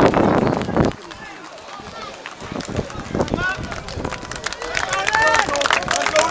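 Outdoor football crowd: a loud, dense rush of noise that cuts off abruptly about a second in, then scattered voices and shouts that grow busier towards the end.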